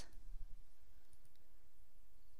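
A few faint computer mouse clicks in the first half-second or so, over a steady low hum.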